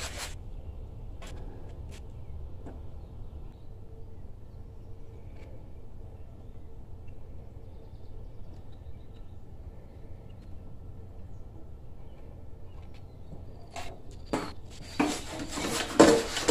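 Low steady background rumble with a faint hum, and a few faint, scattered clicks of hand tools on metal as the pressure washer pump is being unbolted, the clicks a little more frequent near the end.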